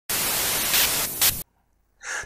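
A burst of static hiss lasting about a second and a half, which cuts off suddenly into silence.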